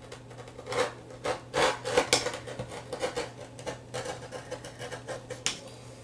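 Rotary cutter cutting through fabric in a run of short scraping strokes, with a sharp click near the end.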